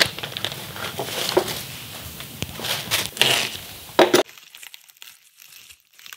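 Bubble wrap and plastic packaging crinkling and crackling as it is handled and unwrapped by hand, with many small sharp crackles. About four seconds in, the sound cuts off abruptly and is followed by a faint, quiet stretch.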